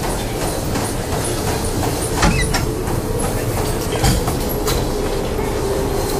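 Continuous rumbling noise with many irregular clicks and knocks over it and a faint steady hum.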